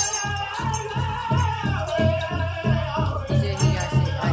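Powwow drum group singing a fast fancy-dance song over a steady big-drum beat of about three strokes a second, with the rattle of the dancers' bells.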